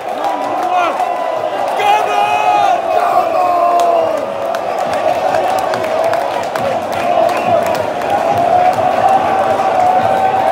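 Large crowd of football supporters chanting together, many voices holding one long, loud sung note that drifts slowly in pitch, with shorter sung phrases over it in the first few seconds.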